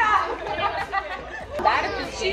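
Group chatter: several girls' voices talking over one another.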